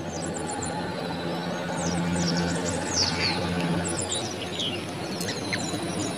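Small birds chirping, many short high calls scattered throughout, over a steady low hum.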